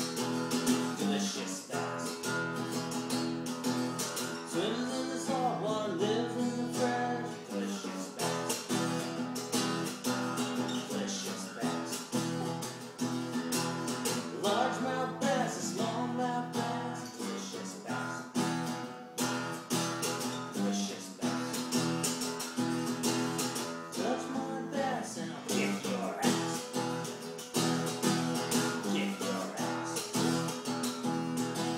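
Acoustic guitar strummed in a steady rhythm, playing a song.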